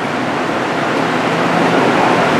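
Steady rushing noise with no distinct events, rising slightly in level.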